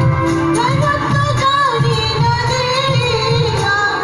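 A woman singing a Hindi film song into a handheld microphone, with a low pulsing beat underneath.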